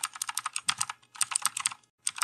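Fast typing on a computer keyboard: a quick run of key clicks that breaks off briefly about a second in and again near the end.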